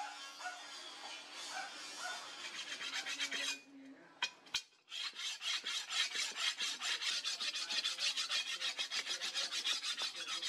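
A hand-held sharpening stone rubbed quickly back and forth along a heavy steel machete blade, about four to five scraping strokes a second, starting about five seconds in after a brief pause. Before the pause there is a steady hiss with a low hum.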